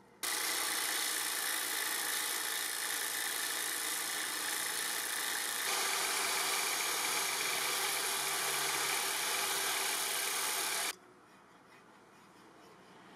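Electric power tool spinning a sanding disc while a wooden knife handle is sanded against it: a steady motor whine with the hiss of abrasive on wood. It starts suddenly, changes pitch slightly about halfway through and cuts off suddenly near the end.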